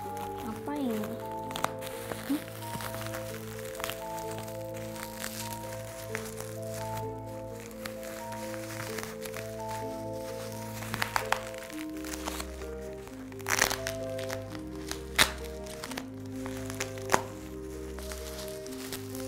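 Plastic bubble wrap and packing tape crinkling and crackling as a package is unwrapped by hand, with scattered sharp cracks that grow louder in the second half, over slow background music with held notes.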